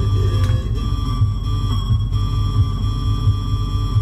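Eerie droning soundtrack of a creepy video: a steady deep rumble under a few held high tones.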